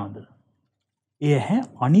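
Speech only: a man talking in Sinhala trails off, falls silent for just under a second, then starts speaking again about a second in.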